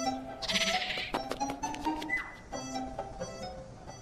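Background score music with light struck or plucked notes over held tones, and a brief high buzzing flourish about half a second in.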